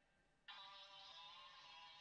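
Vocal loop sample played back quietly: a held, effect-processed sung note fades out, and a new sustained note starts suddenly about half a second in.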